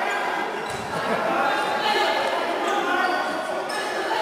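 Basketball bouncing on a gym floor, with two hits about three seconds apart ringing in the echo of a large hall. Men's voices run underneath.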